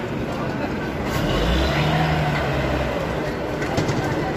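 Several people's voices talking and calling over a dense, noisy outdoor background, with a vehicle engine running low and steady for about a second and a half in the middle.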